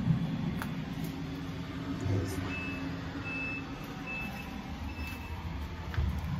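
Reversing alarm of a vehicle backing up, a high single-pitch beep repeating about once a second, over a steady low engine rumble.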